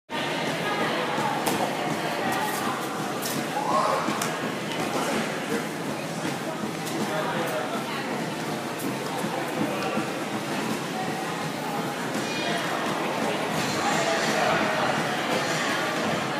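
Indistinct background chatter of people in a large indoor hall, a steady hubbub with no clear words, with occasional light clicks and knocks.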